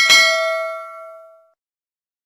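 A click, then a single bell ding as the notification-bell icon is clicked, ringing out and fading away over about a second and a half.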